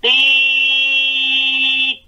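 A person's voice holding one steady note for nearly two seconds, without wavering in pitch, before stopping abruptly.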